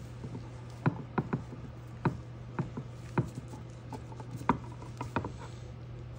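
Scattered, irregular light clicks of a T-handle hex key turning a socket head cap screw into a metal fixture plate, the key shifting and knocking in the screw head as it is turned, over a steady low hum.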